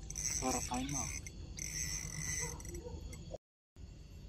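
Night chorus of insects chirping, high and steady, with a faint voice in the first second; the sound cuts out to total silence for a moment about three and a half seconds in.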